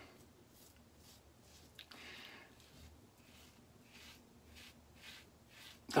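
Stainless steel safety razor scraping through beard stubble and lather in a quick run of short, faint strokes, about three a second, cutting on an angle across the grain.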